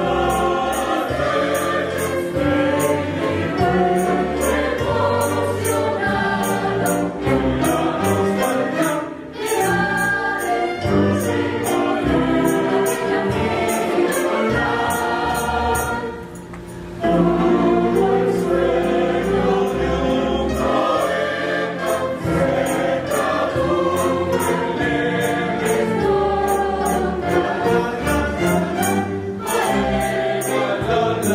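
Mixed choir singing with a string orchestra in a live performance of a Salvadoran folk song, with a light regular beat under it. The music thins out briefly about nine seconds in and again for about a second near the middle.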